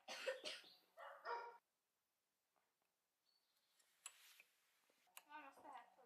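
Near silence, broken by a few faint, short pitched calls in the background near the start and again near the end, and a faint click about four seconds in.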